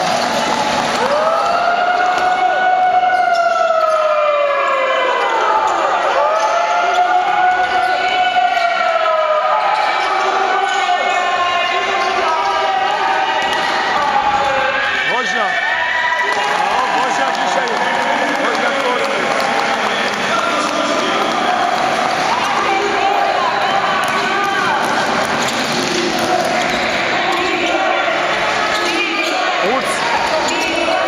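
A basketball being dribbled on the wooden floor of a sports hall, under the voices of players and spectators during play. Twice in the first ten seconds a long tone rises and falls over the game sounds.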